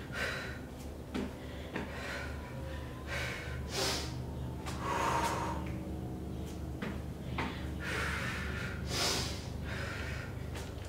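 A woman breathing hard through a set of weighted burpees with dumbbells, a sharp loud breath about every second or so. A few short knocks from her landings and the dumbbells, over a steady low hum.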